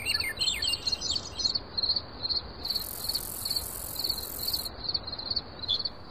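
Nature ambience: an insect, cricket-like, chirping at a steady high pitch about three times a second, with gliding bird calls in the first second or so over a faint rushing noise.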